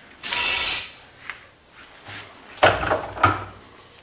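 Tools and a wooden table leg being handled on a wooden workbench: a brief scrape near the start, then a few wooden knocks about three seconds in as the leg is moved on the bench.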